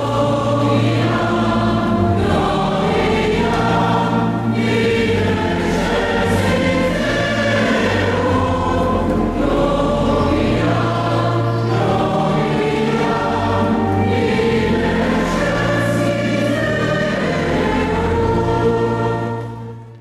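Church choir singing a sustained hymn, voices held in long notes, fading out at the very end.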